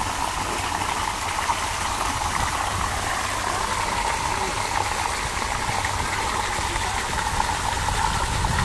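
Steady rush of running water over a low rumble.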